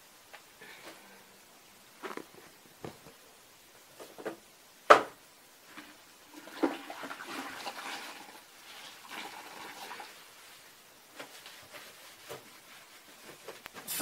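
Cloth wiping down a plastic rack, with soft rubbing and swishing and scattered clicks and knocks as it is handled; the loudest knock comes about five seconds in.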